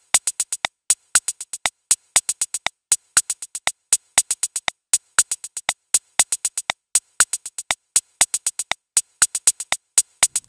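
Arturia Spark drum machine playing a sequenced 16th-note hi-hat roll: a rapid, even run of short, bright ticks, some hits louder than others where accents are placed.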